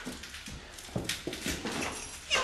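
Boot footsteps on wooden boards: about half a dozen irregular steps in two seconds.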